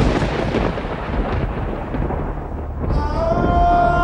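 A loud thunder-like crash sound effect of the kind used for dramatic moments in TV serials, dying away over about three seconds. Near the end a sustained music chord swells in.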